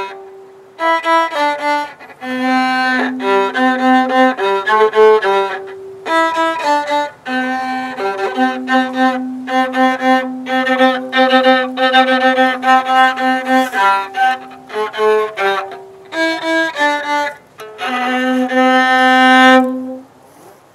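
Viola bowed by a beginner of about five days, playing a simple tune one note at a time in short phrases with brief breaks, ending on a long held note. The player himself judges the performance not all that great.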